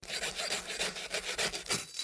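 Sound effect of a small saw cutting through a handcuff chain: rapid, evenly repeated rasping strokes that start abruptly and stop just before the end.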